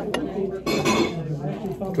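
Fork and knife clinking and scraping on a plate during a meal: a sharp tick just after the start, then a louder ringing clink about two-thirds of a second in.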